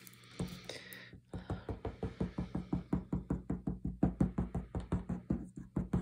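A nearly empty bottle of multipurpose liquid glue squeezed over paper, its tip spluttering air and glue in a fast run of clicks, about eight a second, starting about a second in.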